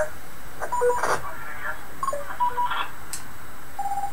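Another station's voice coming back over the internet radio link through a small amplified speaker, thin and telephone-like over a steady hiss. A short steady beep near the end comes as the client switches to transmit.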